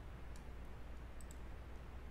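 A few faint, sharp clicks at the computer, two of them close together a little past the middle, over a steady low hum and hiss of room noise.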